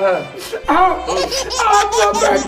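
A man laughing loudly and high-pitched, several laughs in a row.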